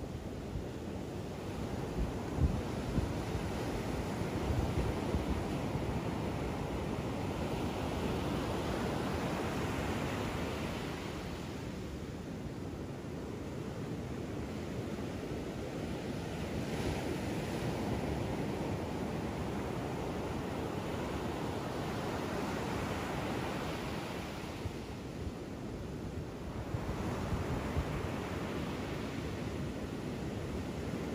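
Ocean surf breaking and washing up a sandy beach, a steady rushing that swells and eases as each set of waves comes in.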